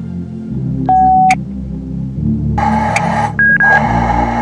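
Electronic beeps from an Ocean Reef GSM Mercury underwater communication unit as its button is pressed: one short lower beep about a second in, then bursts of hiss with a short higher beep between them near the end, as the unit starts transmitting. Background music plays throughout.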